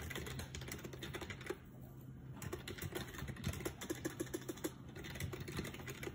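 Faint, irregular clicking of typing on a computer keyboard.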